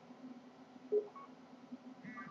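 Faint steady low electrical hum, with one short tone about a second in.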